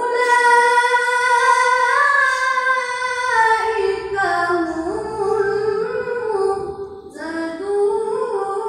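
A boy reciting the Qur'an in melodic tilawah style through a microphone, drawing out long, high held notes with ornamented turns. He pauses for breath about seven seconds in and starts a new phrase.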